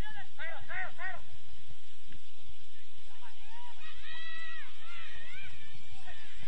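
Voices shouting across a football pitch: a quick run of short, rising-and-falling calls in the first second, then longer calls a few seconds later, over a steady background noise.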